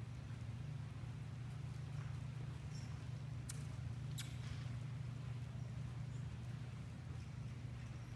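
Soft hoofbeats of an Arabian gelding jogging on arena sand, with a few faint clicks, over a steady low hum.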